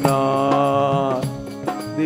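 A man singing a long held note of a Hindi devotional song over a steady instrumental drone. The note breaks off about a second in, and a new sung phrase begins near the end.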